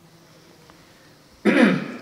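A man clears his throat once: a single short, loud burst about one and a half seconds in.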